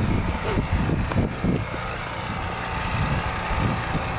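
Wind buffeting a handheld camera's microphone: an irregular low rumble that swells and fades, with a couple of brief bumps from the camera being handled.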